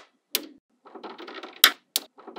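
Small magnetic balls clicking together as a chain of them is laid down onto a layer of magnet balls: a sharp snap about a third of a second in, a rapid patter of little clicks lasting under a second, then two more sharp snaps near the end.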